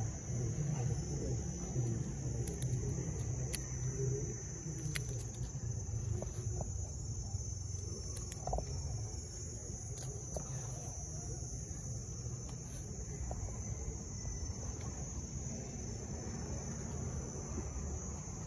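Insects calling in a steady, unbroken high-pitched chorus over a low rumble, with a few faint scattered clicks.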